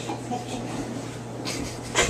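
Quiet kitchen room tone with a steady low electrical hum and faint handling sounds of food pieces being pushed onto a pencil used as a skewer. A short breathy hiss comes near the end.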